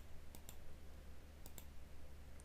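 A few faint computer mouse clicks over a quiet background hum, made while choosing Subdivide from a menu.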